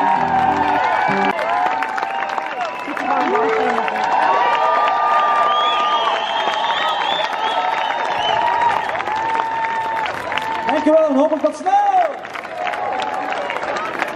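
Concert crowd cheering, whooping and clapping as a live band's song ends; the music stops about a second in, leaving the crowd's cheers and applause.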